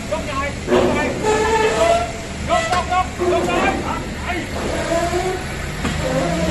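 Men's voices calling out back and forth over a forklift engine running steadily underneath.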